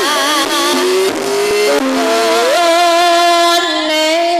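A female Javanese sinden singing through a microphone over a bronze gamelan, with struck bonang and saron strikes in the first half; about halfway through her voice slides up into a long held note with vibrato.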